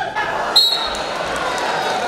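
A short, sharp referee's whistle blast about half a second in, restarting a freestyle wrestling bout, over steady crowd noise and shouting voices echoing in a large arena.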